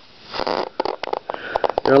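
Small high-voltage arc from a flyback transformer driven by a ZVS driver: a brief hiss, then irregular sharp crackling snaps. It is a thin, weak arc, short of the output this flyback should give.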